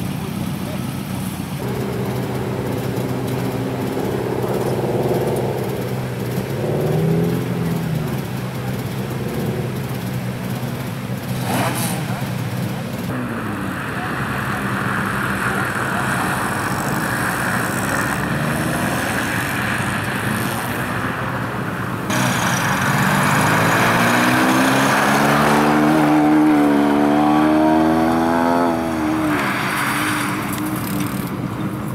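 Rally car engines: cars idling at first, then a rally car driven hard on a snowy stage, its engine note rising and falling through revs and gear changes over the last several seconds.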